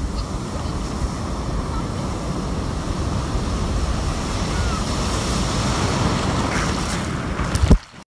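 Ocean surf breaking and whitewater rushing around the legs, a steady wash of noise with wind buffeting the microphone. Near the end there is a loud knock, and then the sound drops away suddenly.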